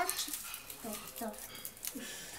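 Soft, short voice sounds from small children: a few brief murmured syllables that rise and fall in pitch.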